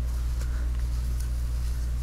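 Microfiber towel rubbing faintly over a motorcycle's plastic headlight as wax is buffed off, with a few light strokes, under a steady low hum.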